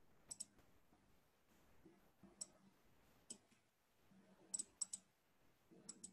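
Near silence broken by about seven faint, sharp clicks at irregular intervals, a pair near the start and a quick cluster of three near the end.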